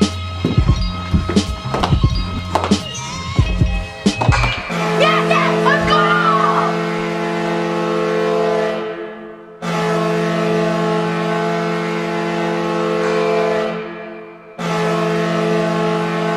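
Beat-driven background music with voices and stick clicks, then, about four and a half seconds in, a hockey goal horn sounds a steady multi-tone chord in three long blasts with short breaks between them, signalling a goal.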